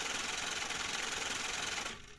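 Logo-reveal sound effect: a steady rush of static-like noise with rapid fine ticking, like scrambling digital text. It cuts off just before the end.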